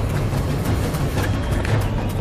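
Background soundtrack music with a heavy, steady low end and frequent sharp clicks over it.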